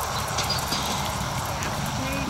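Hoofbeats of a horse trotting on sand arena footing, over a steady low rumble.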